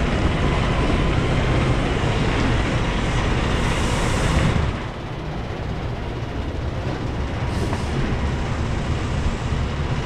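Semi truck's diesel engine running with a steady low rumble as the tractor and tanker trailer pull forward at low speed. The sound drops a little about five seconds in.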